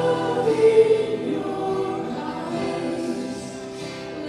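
Live worship band playing a slow song: several singers holding long notes together over acoustic guitar, electric bass and keyboard.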